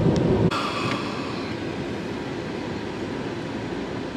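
Low rumble of road noise inside a moving car, cut off abruptly about half a second in by a quieter steady hiss of the car's ventilation fan.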